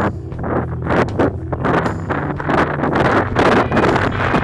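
Wind buffeting an action camera's microphone in irregular rushing gusts while riding, over steady background music.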